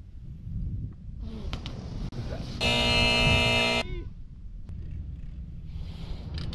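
A vehicle horn blares once, steady and a little over a second long, about halfway through, over a low rumble of wind on the microphone.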